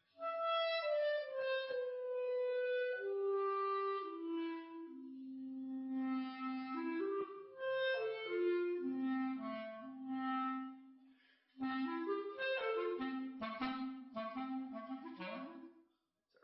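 Solo clarinet played on a Clark W. Fobes Debut mouthpiece: a flowing phrase of slurred notes, then after a short pause a quicker passage of tongued notes that stops just before the end.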